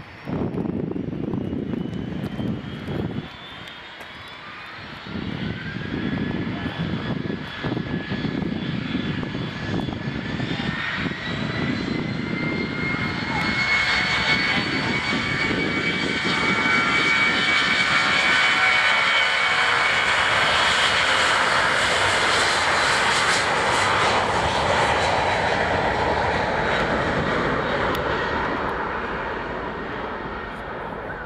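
A Boeing 757-200F freighter's twin jet engines spool up to take-off thrust: a whine rises in pitch, then holds steady over a rumble that grows loud as the aircraft rolls down the runway, easing a little near the end.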